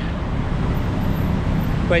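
Steady city street traffic noise: an even rumble and hiss of road vehicles, with no single event standing out.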